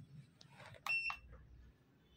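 A single short, high-pitched electronic beep from the handheld Leeb hardness tester's main unit, a key-press beep, about a second in. A soft rustle of handling comes just before it.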